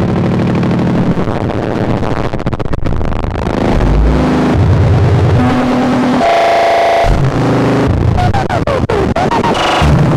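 BugBrand modular synthesizer playing a dense, harsh electronic patch with no external effects: shifting low drones and noisy grinding, a bright held tone with many overtones about six seconds in, and short gliding chirps near the end.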